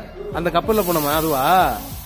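A young boy's voice making drawn-out sing-song sounds, the pitch swooping up and down. A steady high hiss joins a little under a second in.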